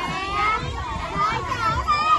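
Several children talking and calling out at once, their voices overlapping.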